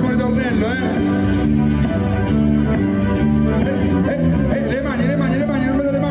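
Live pizzica band playing a steady dance beat: electric bass, violin with a wavering, ornamented melody, keyboard and a tamburello (frame drum with jingles).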